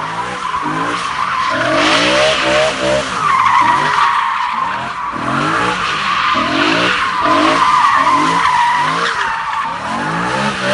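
BMW E92 M3's V8 revving up and down repeatedly while its rear tyres squeal continuously as it spins doughnuts, the tyres smoking on the asphalt. The squeal wavers in pitch and the engine note rises and falls every second or so.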